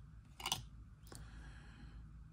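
Faint handling of trading cards: a brief papery rustle about half a second in and a small click a little after one second.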